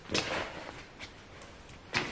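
Fabric rustling as a swimsuit is stuffed into a neoprene pouch, loudest in the first half-second, followed by a few faint clicks and soft handling noises.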